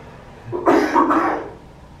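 A man coughing into his hand: a short run of about two loud coughs starting about half a second in.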